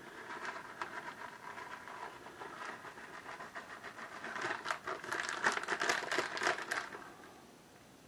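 Plastic bag of shredded Italian-style cheese crinkling and crackling as it is shaken out over the pan. It is busiest in the second half and dies away about a second before the end.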